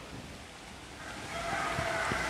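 Chalk scratching on a blackboard as a word is written, starting about a second in over a faint hiss.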